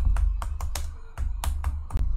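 Quick computer-keyboard typing, about a dozen short irregular keystroke clicks, over background music with a steady deep bass.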